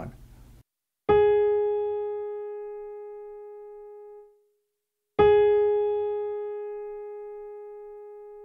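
A single piano note, the A-flat above middle C, struck twice about four seconds apart, each time left to ring and fade away.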